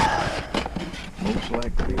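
Carded die-cast toy cars clicking and rustling as a hand sorts through them on a store display, with a short voiced 'oh' near the end.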